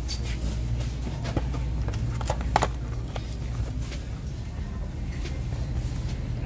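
Scattered knocks and clicks from handling things on a metal shopping cart, over a steady low rumble; the loudest knock falls about two and a half seconds in.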